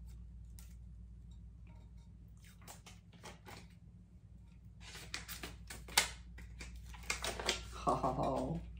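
Heat-shrunk plastic wrap and sublimation paper being peeled and pulled off a hot stainless steel mason jar by gloved hands. It makes crinkling and crackling in two spells, with one sharp snap about six seconds in, over a low steady hum.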